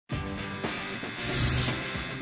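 Title-sequence sound of a neon sign buzzing with electric hum as it lights up, under a short music sting. The buzz is steady and swells a little after the first second.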